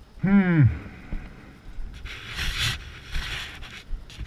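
A man's voice gives one short exclamation that falls steeply in pitch. About two and three seconds in come two rushes of noise, each lasting well under a second.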